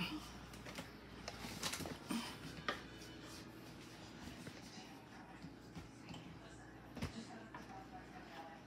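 Faint kitchen room tone with a steady low hum, broken by a few light clicks and knocks.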